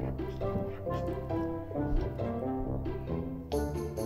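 Background music: a light melody of short, changing notes.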